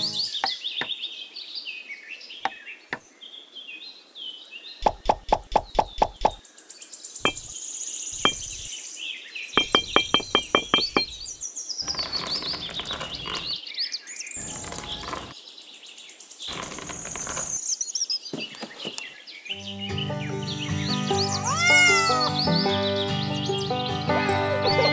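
Birds chirping throughout, with two quick runs of sharp clicks about five and ten seconds in and several short rustling bursts in the middle as small clay bricks and pebbles are handled. Background music comes in near the end.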